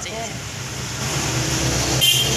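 Steady low rumble of road traffic, with a motor vehicle engine running, and a voice briefly just after the start.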